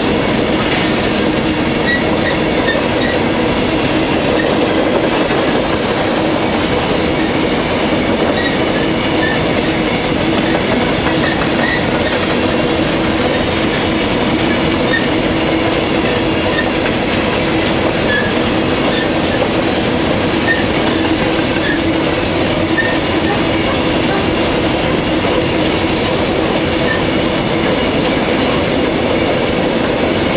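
Freight train of covered hopper cars rolling past at close range: a loud, steady rumble of steel wheels on rail with clickety-clack over the rail joints, and a few faint steady ringing tones over it.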